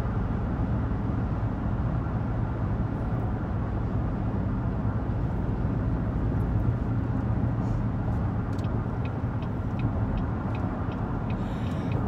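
Steady road and engine rumble inside a moving SUV's cabin, low and even. Near the end comes a short run of faint, evenly spaced light ticks, about three a second.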